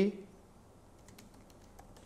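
Faint computer keyboard typing: a few scattered, irregular key clicks as text is typed into a code editor.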